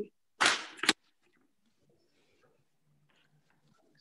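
A short hiss on a video-call microphone ending in a sharp click within the first second, then the call audio drops to silence for about three seconds.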